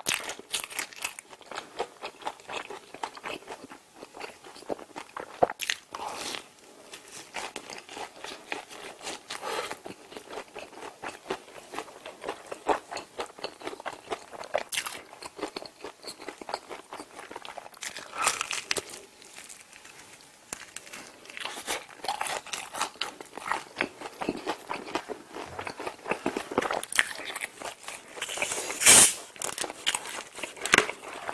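Close-up eating sounds: crunchy bites and chewing of crispy fried food taken off a skewer, full of sharp crackles, with the loudest crunch near the end.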